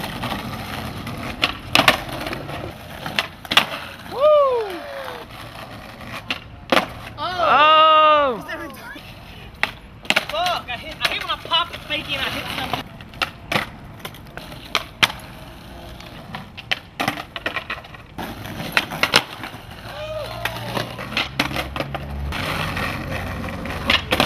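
Skateboards rolling on rough asphalt, with repeated sharp clacks of tails popping and boards slapping down on landings and bails. Loud shouts and whoops break in, the longest at about eight seconds.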